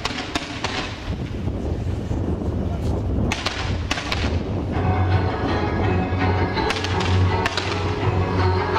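Fireworks launching to a music soundtrack. Music with a steady low bass plays throughout, while the shots go off as sharp pops and crackles, in a cluster about three to four and a half seconds in and again around seven seconds.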